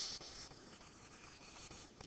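Faint scratching of a stylus drawing a line on a tablet screen, with a short tap as the pen touches down at the start.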